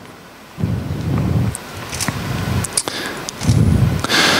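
Handling noise on a handheld microphone: low rumbling in two stretches, starting about half a second in and again near the end, with a few faint clicks.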